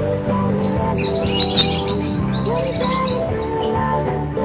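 Rosy-faced lovebirds chirping, with a quick flurry of high chirps about a second in, over background guitar music.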